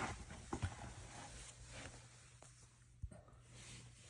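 Quiet room tone with a steady low hum and a few faint, short taps.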